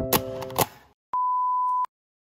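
Piano background music cut off after two sharp clicks, then a single steady electronic beep at one pitch lasting under a second, ending abruptly.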